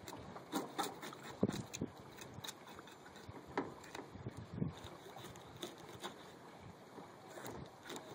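A fillet knife working on a mullet on a towel: scattered soft scrapes and taps at irregular intervals, over faint wind hiss.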